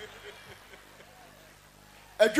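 A pause between speech: faint steady low hum and hiss, with faint distant voices about halfway through.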